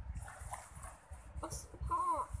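Pencil scratching on a paper worksheet in short strokes as answers are written. Near the end comes a brief whine that bends down in pitch, from a source that cannot be named.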